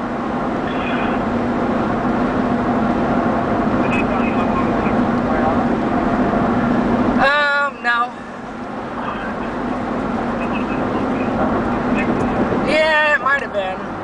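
Steady road and engine noise inside a moving car's cabin, with a low steady hum. The noise drops suddenly about seven seconds in, then builds back up, and a voice is heard briefly then and again near the end.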